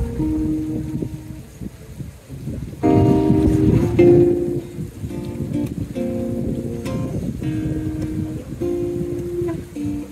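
Acoustic guitar playing the opening of a song. It starts softly, then strummed chords come in louder about three seconds in and change in a steady pattern.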